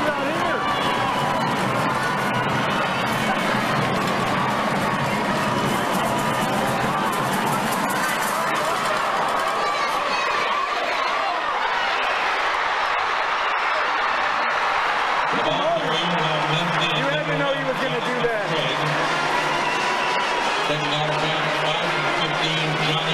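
Football stadium crowd: many voices talking and cheering, with music playing underneath. The cheering swells about halfway through as a play is made, and held low musical notes come in near the end.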